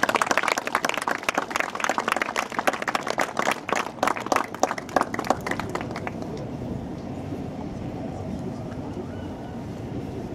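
Applause, with separate hand claps heard distinctly, for about six seconds, thinning out and then stopping. A low, steady street background remains afterwards.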